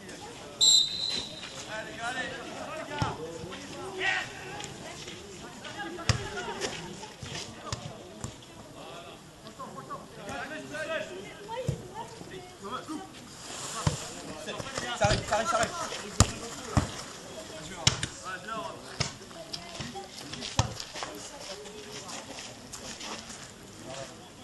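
A referee's whistle blown once, briefly, about a second in. Then come players' voices calling out across a football pitch and the scattered thuds of the ball being kicked.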